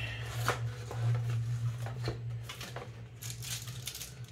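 A paper shipping mailer being torn open and handled: scattered rips and crinkles, more of them near the end, over a steady low hum.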